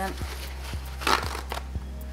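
Roll of paper towel being handled, with one short papery rustle about a second in.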